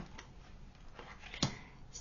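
A tarot card being drawn and laid on a wooden tabletop: faint card handling, then a single sharp tap about one and a half seconds in.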